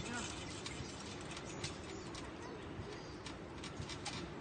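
Quiet outdoor background with scattered light clicks and a few faint bird chirps.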